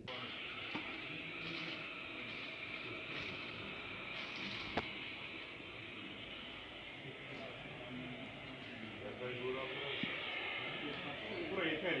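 Indistinct voices of people talking in the street over a steady hiss of street noise, with one sharp click about five seconds in.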